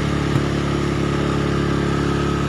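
Small ATV engine idling steadily at an even pitch, with a couple of faint knocks.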